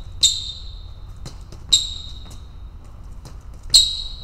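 Sneaker soles striking and squeaking on a fencing strip during quick advance-retreat footwork. Three sharp squeaking steps come about a second and a half apart, each with a brief high ring, and fainter foot taps fall between them.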